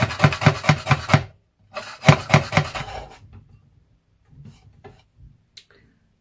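Kitchen knife rapidly chopping frozen green chillies on a chopping board, about six or seven chops a second. The chopping stops just after a second in, picks up again for about a second, then trails off into a few scattered light taps.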